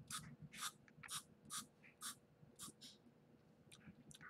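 Small pump-spray bottle misting into an open mouth: a run of about seven short, faint hissing squirts, roughly two a second, dying out after about three seconds.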